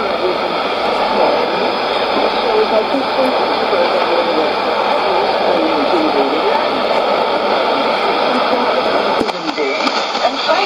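Shortwave AM broadcast speech from a Sony ICF-2001D receiver's speaker, the voice muddied by steady hiss and noise. About nine seconds in, the sound changes abruptly as the receiver is retuned to another frequency and a different signal comes in.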